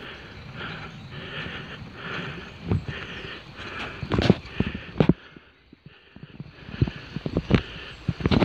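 Bicycle ridden over a wet road. A hiss pulses about twice a second for the first five seconds, and sharp knocks and rattles from the bike over bumps come through the middle and second half.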